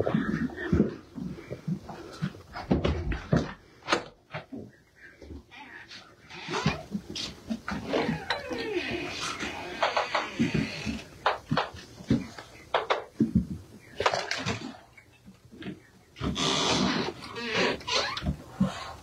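Great horned owlets giving raspy hissing calls, the loudest stretch near the end, among scattered knocks and rustles from handling.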